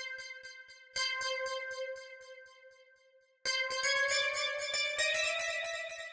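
Bright Thor synthesizer patch in Reason playing single preview notes as they are drawn into the piano roll: one note fading, a second about a second in, and from about three and a half seconds a note that rises in pitch and is held before fading, all with a rapid even pulsing.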